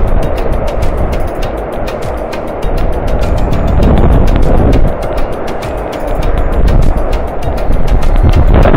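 Whitewater river rapids rushing over boulders: a loud, steady rush with a deep rumble, with background music keeping a steady beat underneath.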